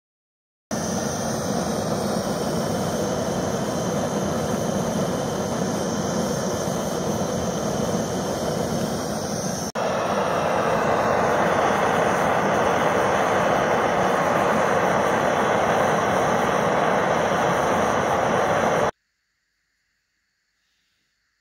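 Gas torch flame burning steadily into a firebrick while melting gold concentrate into a bead. It breaks off sharply about halfway through and resumes slightly louder.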